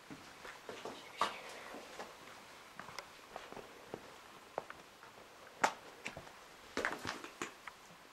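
Irregular footsteps and scuffs on rock and grit: scattered crunches and clicks, the sharpest about five and a half seconds in and a short cluster around seven seconds.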